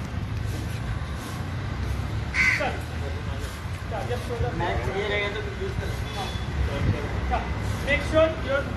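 Steady low outdoor rumble with faint voices, and a short harsh call about two and a half seconds in.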